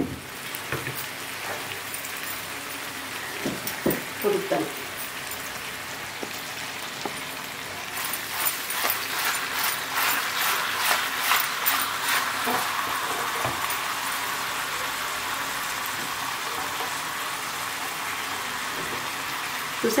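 Food sizzling as it fries in a clay pot on a gas stove: a steady hiss with a louder crackling stretch in the middle.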